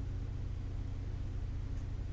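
Steady low hum of room background noise, even throughout, with no distinct event.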